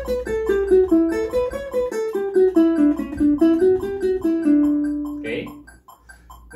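Ukulele plucked with the thumb, playing a fast run of single eighth notes in an A Mixolydian to D major scale exercise at 144 bpm. The line moves mostly downward and ends on a held low note about five seconds in.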